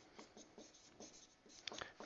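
Faint short strokes of a marker pen on a whiteboard as an equation is written out.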